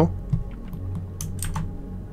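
A few quick keystrokes on a computer keyboard, clicking over a faint steady low hum, including the Shift + A shortcut that opens Blender's Add menu.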